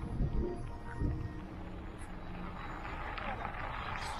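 Road and engine noise in a moving car's cabin, with two low thumps near the start and about a second in. Held musical tones fade out during the first second or so.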